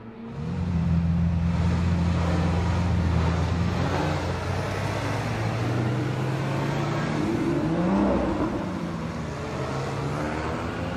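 Several supercar engines idling together in a steady low drone, with an engine revved up and back down briefly a few times, most clearly about eight seconds in.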